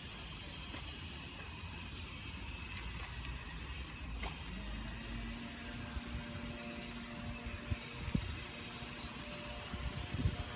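A distant motor vehicle's engine running over a low outdoor rumble. Its hum rises in pitch about four and a half seconds in, then holds steady for a few seconds. There are a few faint knocks.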